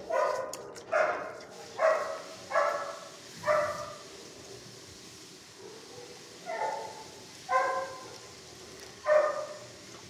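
A dog barking in a shelter kennel: five barks about a second apart, then after a pause of about two seconds, three more.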